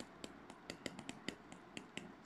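Stylus tip tapping and clicking on a tablet's glass screen while handwriting: a dozen or so faint, irregular clicks.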